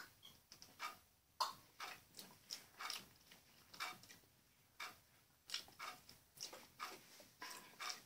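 Faint lip smacks and tongue clicks from tasting very sour liquid candy squeezed from a tube, an irregular string of short smacks about two or three a second.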